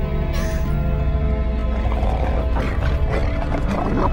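Dark horror-film score: sustained droning tones over a heavy low rumble, with a rough, noisy sound-design texture thickening in the second half.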